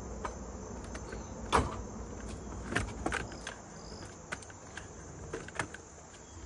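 Footsteps going down wooden-deck stairs: a few irregular knocks and clicks, the loudest about a second and a half in. Insects keep up a steady high buzz behind them.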